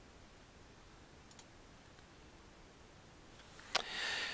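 Near-silent room tone with computer mouse clicks: a faint click about a second and a half in and a sharper one near the end, followed by a brief soft hiss like an in-breath.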